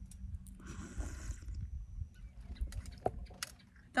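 A person sipping tea from a small glass, a soft slurp about a second in that lasts about a second, over a low rumble of wind on the microphone.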